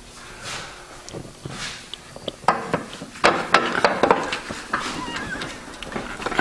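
Steel pry bar levering between a car's frame and body at a body mount to break it free: a quiet start, then a run of sharp metallic clicks and knocks from a little under halfway.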